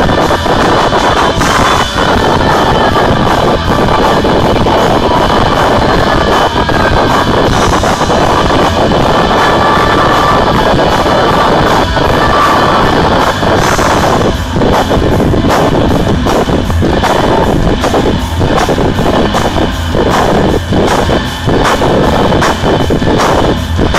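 Live rock band led by distorted electric guitar, playing very loud. The recording is overloaded, so the sound is clipped and harshly distorted throughout. About halfway through the playing turns choppier, with short regular breaks.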